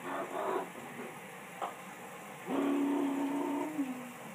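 Newborn baby crying: short fussy sounds at first, then one long, steady wail about two and a half seconds in that drops off just before the end.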